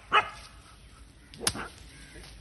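A dog barks once, short and sharp, right at the start, then a single sharp click about a second and a half in.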